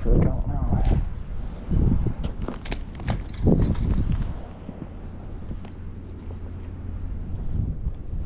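Wind rumbling on the microphone, with brief voice sounds near the start and a scattering of sharp clicks and knocks in the first few seconds.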